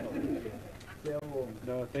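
Quiet voices in the room: a few low murmured words and hums from about a second in, just after the birthday singing has ended.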